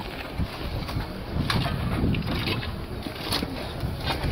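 Wind rumbling on the microphone, with a few short, sharp scrapes of shovels in soil as men fill in a grave with earth.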